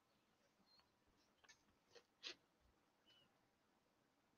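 Near silence: room tone, with a faint brief sound a little after two seconds in.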